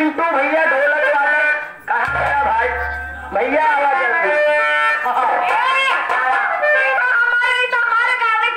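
Live stage music: a man singing through a loud microphone and PA over held reedy instrumental notes. There is a brief low rumble about two seconds in.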